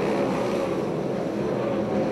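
A pack of sprint cars racing on a dirt oval, their V8 engines blending into one steady drone, with engine pitches wavering slightly as cars pass through the turn.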